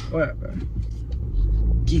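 Steady low rumble of a moving car heard inside its cabin, with a brief faint voice sound just after the start.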